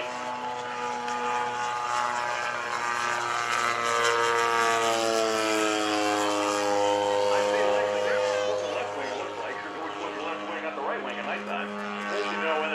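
Large-scale RC Pitts biplane's 100cc twin-cylinder two-stroke petrol engine (Desert Aircraft DA-100) and propeller droning in flight. The pitch climbs and then sinks over several seconds about halfway through as the plane manoeuvres, then settles lower.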